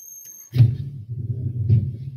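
A deep, low rumble from a dinosaur documentary's soundtrack playing on a computer. It starts suddenly about half a second in and holds steady. A faint high electronic whine comes before it.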